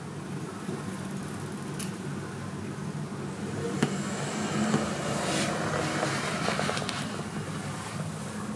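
A road vehicle passes outside, its noise swelling through the middle and fading near the end, over a steady low hum of room tone with a few faint clicks.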